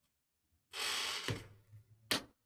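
A man's breathy exhale close to the microphone, lasting under a second, with a low thump near its end.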